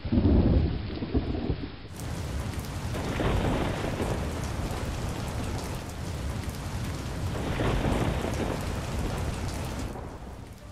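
Thunderstorm sound effect: steady rain with rolls of thunder, the loudest right at the start and further rumbles a few seconds in and near the end.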